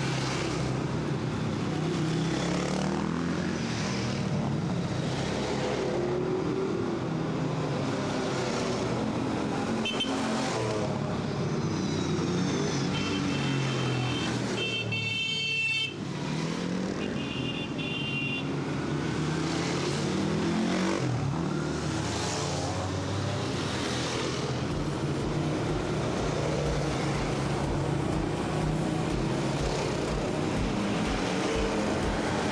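A line of quads/ATVs riding past one after another, their engines rising and falling in pitch as each passes. A few short high beeps sound about halfway through.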